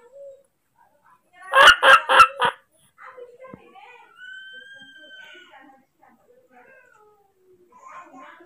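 Newborn baby monkey crying for its mother: four quick, loud cries about a second and a half in, then one long, steady call about four seconds in.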